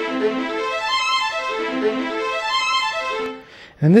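Sampled violin sound font played by FL Studio's channel arpeggiator from a held A minor chord. It runs quick single notes up and down over three octaves in a repeating up-down bounce pattern, then stops near the end.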